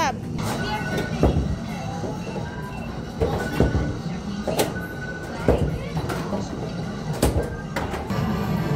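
Skee-ball balls being thrown: about six irregular knocks and thuds as the balls hit the wooden lanes and scoring rings, over a steady din of arcade machines and music.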